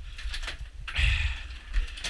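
Scattered light clicks and knocks of handling and movement, over a low rumble of wind on the microphone.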